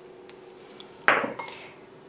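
A small glass bowl clinks once against the Thermomix's metal mixing bowl about a second in, with a brief ringing decay and a lighter knock after it, as two egg yolks are tipped in. A few faint ticks come before it.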